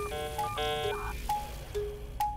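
Computer-style 'searching' sound effect from a magic mirror: a quick run of short electronic beeps and chimes jumping between pitches, then a few single beeps.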